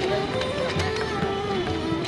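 Background music: a melody of held, gliding notes over a steady accompaniment.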